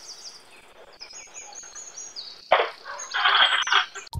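Birds chirping: many short, high, repeated calls throughout, with two brief noisy bursts about two and a half and three and a half seconds in.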